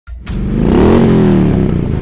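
Motorcycle engine sound effect revving: the pitch climbs for about a second, then eases off.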